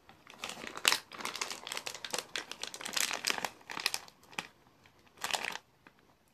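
A plastic gummy-candy bag being handled and crinkled, with a quick run of irregular crackles and one sharper crackle about a second in, then a last short burst of crinkling near the end.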